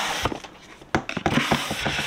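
Cardboard advent calendar boxes being handled and slid against each other, giving a dry rubbing and scraping with small clicks. It comes in two stretches: a short one at the start and a longer one from about a second in.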